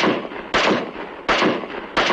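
Four M16 rifle shots, single fire, about two-thirds of a second apart, each cracking sharply and fading in a long echoing tail.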